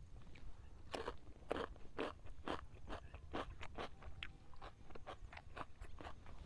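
Close-up crisp crunching of raw cucumber being bitten and chewed, about two sharp crunches a second, starting about a second in.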